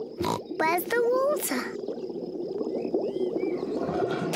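Cartoon pig character's short vocal sounds, gliding in pitch, in the first second and a half, after a single click. A busy background with a few faint high chirps follows.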